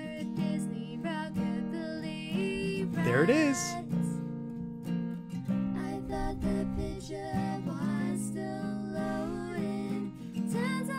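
A woman singing a song to acoustic guitar accompaniment, with a wavering sung note about three seconds in.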